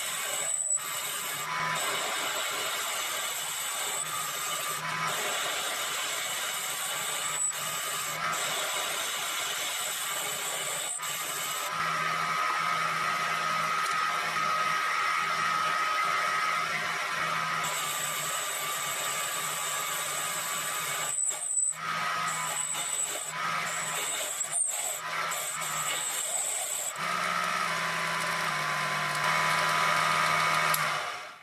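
Proxxon PD 250/e mini lathe running while a boring bar cuts a pocket in a 42CrMo4 steel disc: a steady motor whine with cutting noise. There are a few brief dropouts, and the tone changes abruptly several times.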